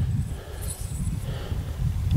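Low, uneven rumble on the microphone, with no speech.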